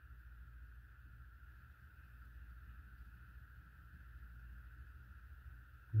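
Faint, steady room tone: a low hum with a thin, even whine above it, and no distinct clicks standing out.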